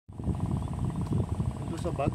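Wind buffeting the phone's microphone in an uneven low rumble. A voice begins right at the end.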